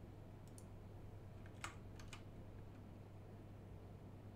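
A few faint, scattered computer keyboard key presses as a command is typed, heard over a steady low hum.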